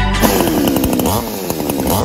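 Biltuff 52cc two-stroke chainsaw engine revving, starting about a fifth of a second in. Its pitch sinks and then climbs again.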